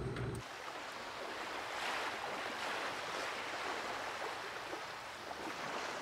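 Ocean waves washing, a soft steady rush that swells and eases gently. A low rumble stops about half a second in.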